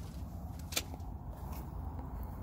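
A single short, sharp click about three-quarters of a second in, over a steady low rumble.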